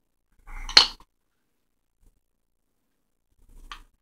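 A small metal hand tool, a screwdriver-like shaft, clinks once sharply against the tabletop just under a second in. A fainter click follows near the end.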